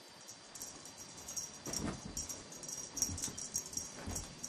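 A small dog playing after a wand toy on carpet, with light metallic jingling throughout and a short, louder low sound about two seconds in.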